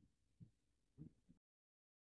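Near silence: a few faint low thumps in the first second and a half, then the sound cuts out completely.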